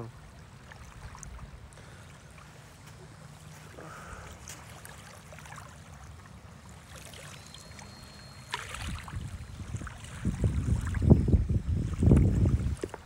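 A radio-controlled model seaplane taking off from the water, its motor a faint thin whine heard from about seven seconds in, stepping up a little in pitch. Over the last three seconds wind buffets the microphone loudly, drowning out most of the motor.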